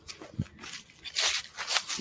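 Footsteps crunching and rustling through dry fallen leaves on a lawn. Irregular crackles, loudest a little over a second in.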